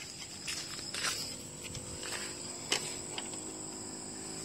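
Steady high-pitched insect chirring, with a few light clicks about half a second, one second and near three seconds in.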